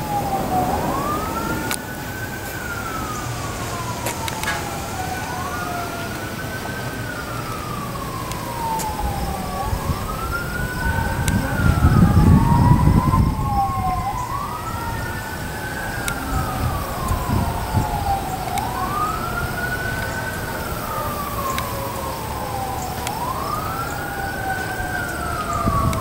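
A wailing emergency-vehicle siren, its pitch rising quickly and falling slowly about every four and a half seconds, with a second siren tone gliding down underneath it. A low rumble swells about halfway through and is the loudest moment.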